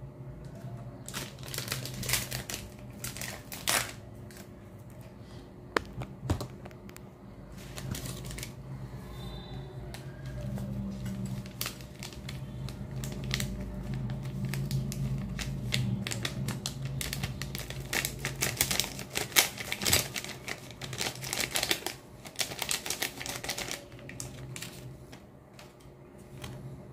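Quick irregular clicks and rattles from handling a foil instant-coffee sachet and a metal spoon in a stainless steel mug. A low steady hum underneath grows louder through the middle.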